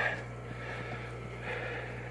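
Steady low electrical hum of running aquarium equipment such as filter or air-pump motors.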